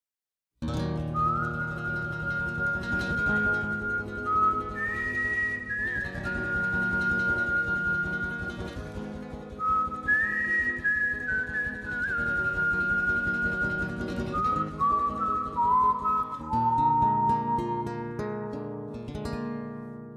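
Background music: a slow melody in a pure, whistle-like tone, held notes with short slides between them, over a plucked and sustained accompaniment. It starts about half a second in and fades out near the end.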